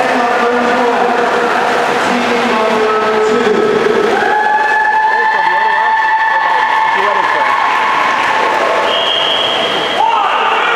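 Many spectators talking at once in an echoing indoor pool hall, a steady crowd chatter. From about four seconds in, a few long held tones sound over the chatter, and a higher one comes in near the end.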